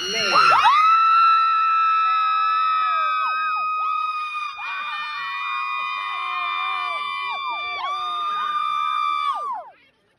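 Several people screaming in long, high, held cheering yells that overlap one another, each dropping off in a falling slide; the yelling stops shortly before the end.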